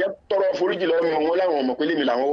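Speech only: a man talking, with a brief pause just after the start.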